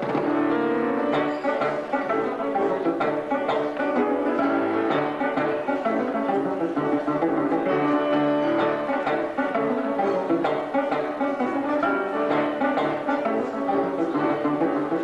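Classic fingerstyle five-string banjo, played with bare fingers on nylon strings, in a lively ragtime-style duet with grand piano accompaniment, its notes plucked in quick, continuous runs.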